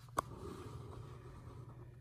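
Quiet room tone with one short, sharp click just after the start.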